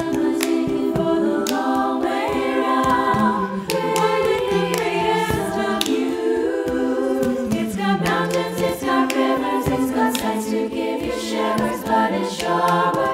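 An a cappella choir singing in harmony, with a rhythm of plastic cups tapped, clapped and slapped on a surface beneath the voices.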